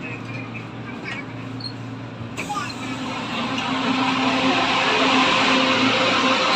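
Steady hum from a stopped LRTA Class 2000 light-rail car, with faint voices. About two seconds in, a rushing noise starts suddenly and grows steadily louder.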